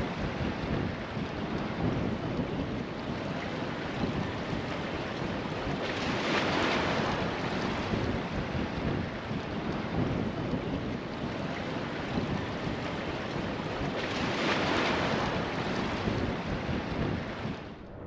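Ocean surf: a continuous wash of breaking waves that swells louder twice, about six and fourteen seconds in.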